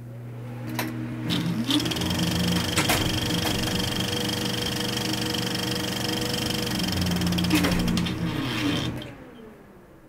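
Film projector sound effect: a fast, even mechanical clatter over a steady hum, swelling after about a second and fading out near the end.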